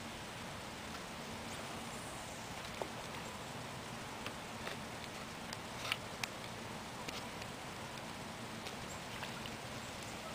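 Quiet outdoor ambience: a faint, steady hiss with a dozen or so scattered light ticks and taps, the loudest about six seconds in.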